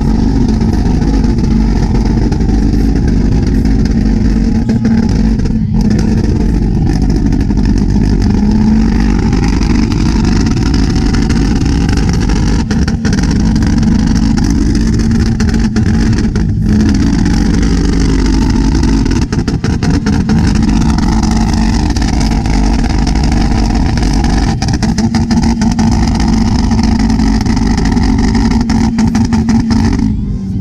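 A car engine revved and held at a steady high rev, with rapid crackling from the exhaust as it spits flames.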